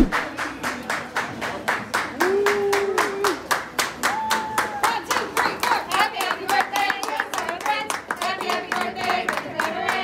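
A small group clapping in a steady rhythm, about four claps a second, while singing a birthday song together.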